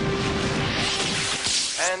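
Cartoon soundtrack sound effect: a loud noisy rush under a held music note that swells into a whoosh about a second and a half in, marking a scene transition. A man's voice begins right at the end.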